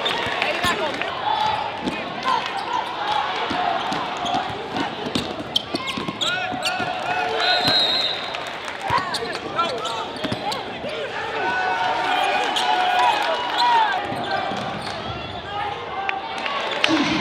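Basketball game sound in a gymnasium: a crowd of many voices talking and calling out, with a basketball bouncing on the hardwood court among them.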